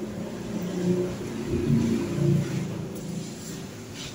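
A motor vehicle engine running, a low rumble that swells and wavers in pitch through the middle, as a vehicle passing by.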